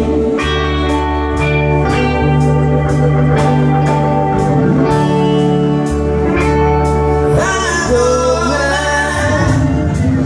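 A live rock band playing: electric guitars, organ, bass and drums keeping a steady beat of about two strokes a second, with singing.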